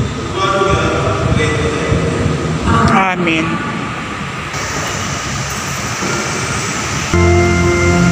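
A voice over a church sound system with the room's echo. About seven seconds in, sustained organ or keyboard music cuts in abruptly and louder.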